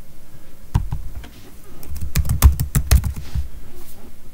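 Typing on a computer keyboard: a couple of separate key presses, then a quick run of keystrokes about two seconds in as a word is typed.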